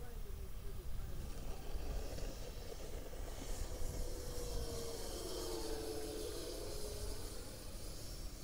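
Twin 64 mm electric ducted fans of an Arrows F-15 RC model jet whining in flight. The whine swells and bends in pitch as the jet passes closer, from about three and a half seconds in until near the end.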